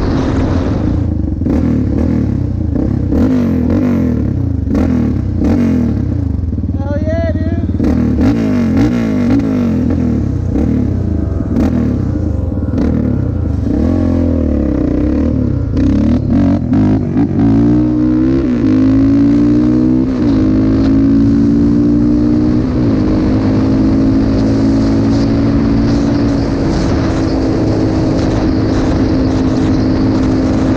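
Yamaha Raptor 700R ATV's single-cylinder four-stroke engine, heard from the rider's seat under way on a road. It revs up and down as it shifts through the gears, eases off around the middle, then pulls away and settles into a steady cruise for the last third.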